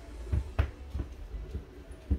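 Several separate light knocks and thumps as a self-balancing hoverboard and the feet around it shift on a hardwood floor, the strongest a little past half a second in.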